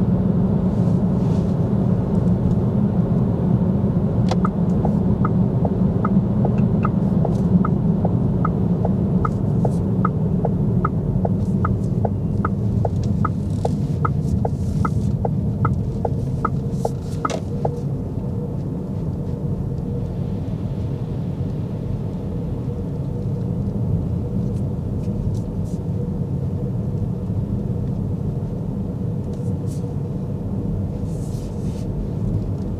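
Cabin sound of a Cupra Born electric car driving: a steady low road and tyre rumble with no engine note. Over it the turn indicator ticks about twice a second, starting a few seconds in and stopping a little past the middle as the car makes its turn.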